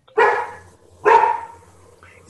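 A dog barking twice, about a second apart, heard over a video call's audio.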